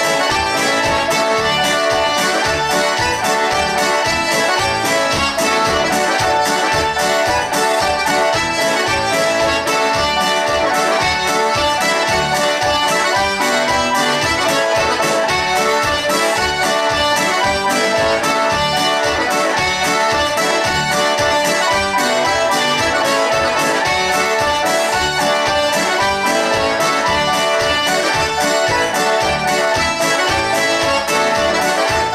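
An accordion and an electronic keyboard playing a tune together, with a steady beat.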